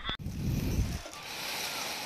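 Rustling and handling noise from a plastic-wrapped item being moved about in a cardboard box: a low rumble for about the first second, then a steady hiss. It comes in right after the music through the intercom cuts off abruptly.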